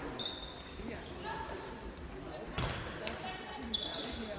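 Handball game in a sports hall: players' voices calling on court and a handball thudding on the hall floor, echoing in the large room, with a sharp knock about two and a half seconds in and a few short high squeaks.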